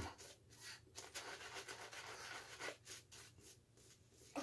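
Badger-hair shaving brush rubbing lather over a stubbled cheek in faint, quick strokes that die away about three seconds in.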